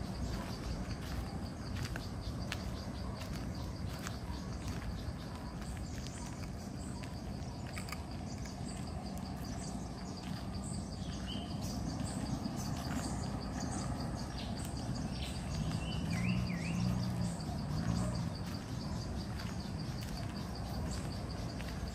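Tropical forest ambience: a steady high insect trill throughout, with a few short bird chirps about halfway and again near the end. Scattered small clicks and crunches run through it, and a low rumble swells briefly near the end.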